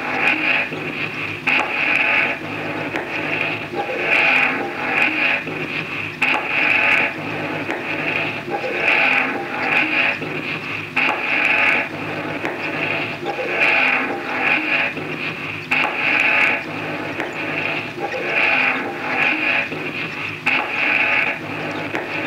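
Experimental noise music: a dense, harsh layered texture that swells and repeats in a loop about every two seconds, strongest in a high, piercing band.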